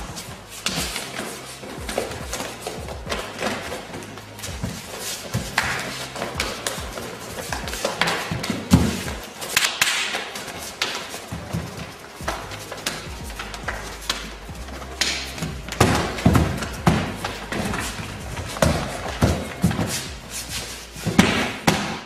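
A string of sudden thumps and slaps from blows and bodies landing on a wooden floor during a sparring bout, with music underneath.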